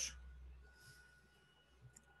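Near silence: room tone with a faint steady low hum.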